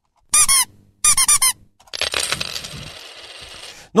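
Electronic radio sound effect: two short bursts of high, warbling chirps, then a bright hissing wash that slowly fades out.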